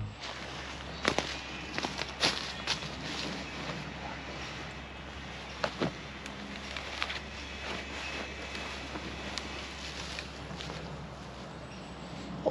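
Footsteps and rustling in dry leaf litter, with scattered sharp snaps and clicks, as a person walks up and settles into a hammock, over a steady low background hum.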